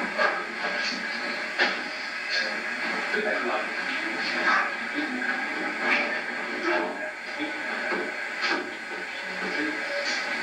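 Hissy, thin old video-tape sound of a room: indistinct muffled voices with scattered short sharp impacts, irregularly spaced about one every second or two.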